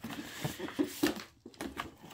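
Rustling and scraping as a cardboard box is slid out of a padded paper mailer, with a few light knocks from handling.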